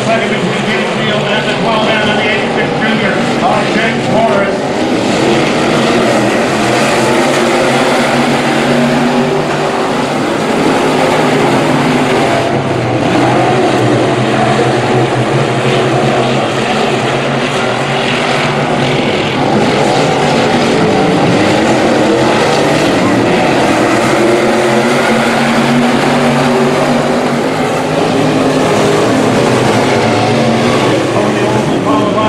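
A pack of dirt-track Sport Mod race cars running together. Their V8 engines make a continuous loud drone, the pitch dipping and rising as the cars lap the oval.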